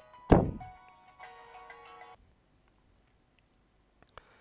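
A sudden thump with a falling sweep in pitch, followed by a short electronic chime of several steady tones that lasts about a second and a half and cuts off abruptly.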